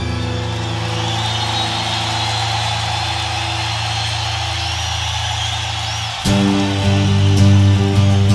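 Live rock band in an instrumental passage: a long sustained low chord rings over a steady wash of crowd noise. About six seconds in, the band moves to a new, fuller and louder chord.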